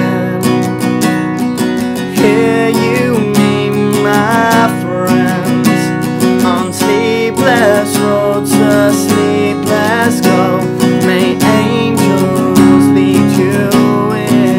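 Acoustic guitar strummed steadily, with a man singing along over it.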